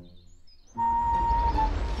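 Cartoon sound effect: a rumbling whoosh that starts suddenly about three quarters of a second in, over light background music with one held note.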